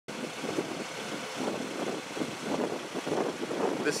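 Wind blowing across the microphone outdoors: a steady rushing noise with irregular gusts.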